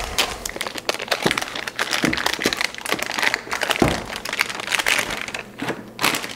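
Plastic hard-drive packaging crinkling and rustling with many small clicks and a few light knocks, as a 3.5-inch hard drive is handled and unwrapped.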